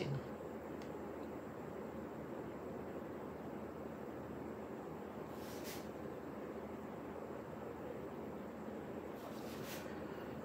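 Steady, faint room noise, with two brief soft hisses, one about halfway through and one near the end.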